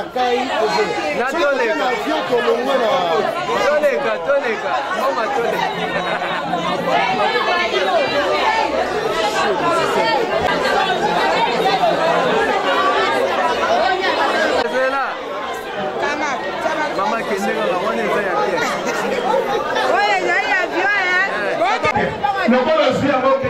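Many people talking at once: a crowd's overlapping chatter, with no single voice standing out.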